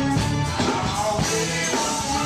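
A live band playing: drum kit, electric guitar, bass guitar and keyboards, recorded on stage in a club.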